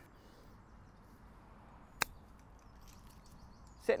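A single sharp click of a golf club striking the ball on an approach shot, about halfway through, over a faint outdoor background.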